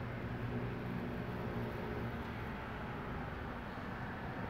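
Steady low engine hum, as of a vehicle idling, holding a few fixed low tones over a faint even rumble.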